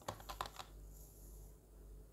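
A quick run of five or six light clicks and scratches, a pen tip tapping on paper, in the first half second or so, followed by faint steady room hum.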